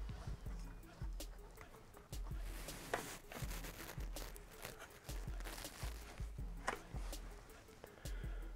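Quiet rustling and light clicks of a rubber timing belt being worked by hand off the cam pulleys and tensioner of an Opel Astra VXR's Z20LEH engine, with a couple of sharper clicks.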